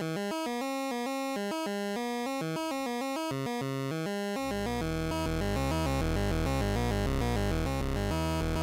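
Modular-synth bass sequence from an analog CEM3340-type VCO: a quick, stepping line of notes randomly picked from C, E flat, G and B flat. About halfway through, the oscillator's two sub-oscillators are brought in, and a deep low bass joins under the line, making it fuller and a little louder.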